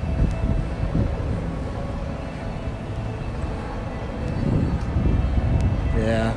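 Steady low outdoor rumble with a faint hum above it.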